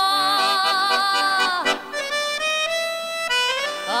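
A woman singing live with accordion accompaniment: she holds a long note with vibrato that slides down and ends about halfway through. The accordion then carries on alone with sustained chords that change in steps.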